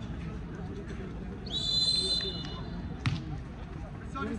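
A referee's whistle blown once, a steady high note lasting about a second, over the chatter of onlookers. A single sharp smack follows about three seconds in.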